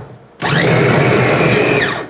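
Electric mini food chopper with a stainless-steel bowl running for about a second and a half, its blades mincing chunks of raw meat. It starts about half a second in and its pitch falls as it spins down at the end.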